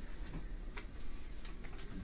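Steady low room noise from a lecture-room recording, with two or three faint clicks about a second apart.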